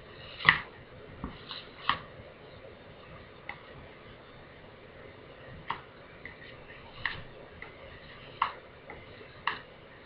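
Scattered light clicks and taps of spatulas and a spoon handled against the tabletop and steel bowls, about nine over several seconds, the sharpest one about half a second in.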